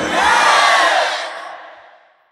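Raised voices carried over a public-address system, ringing on and fading out to silence near the end.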